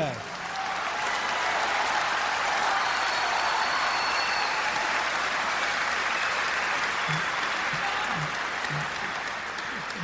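Large audience applauding: a dense, steady clapping that swells within the first second and eases slightly near the end.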